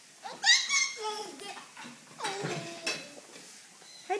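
A baby's wordless vocalising: a loud, high squeal about half a second in, then a shorter call that falls in pitch a little after two seconds.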